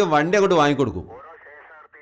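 Speech only: a man talking, then from about a second in a fainter, thin voice cut off at the low and high ends, like speech heard over a telephone.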